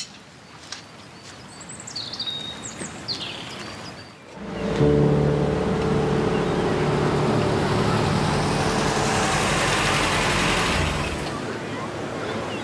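A few faint bird chirps, then, about four seconds in, a car's engine and tyre noise cut in loudly. The noise swells as the car comes close and eases off near the end.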